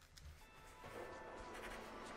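Faint logo-intro sound effect: near silence at first, then a soft hiss with faint held tones swelling in about a second in.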